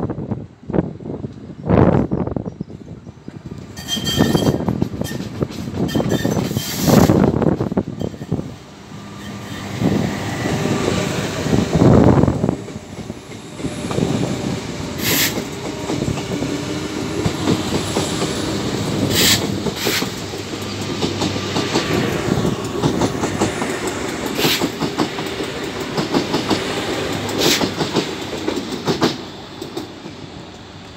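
Double-deck electric commuter train passing close alongside the platform, its wheels clattering over the rail joints in a steady run. Heavy rumbling surges come in the first dozen seconds, and brief sharp high squeaks sound several times in the second half.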